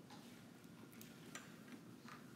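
Near silence with a few faint, sharp clicks scattered over two seconds.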